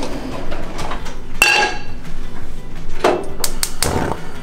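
A nonstick frying pan clanks against metal with a short ringing clang about a second and a half in. A quick run of sharp clicks follows near the end as it goes onto the gas range and the burner is lit.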